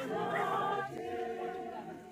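A choir singing, several voices holding long notes together, fading away toward the end.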